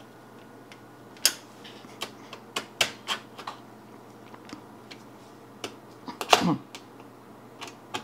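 Irregular sharp clicks and taps of a small hand screwdriver tightening screws into the metal chassis of an all-in-one computer, with the loudest click about six seconds in.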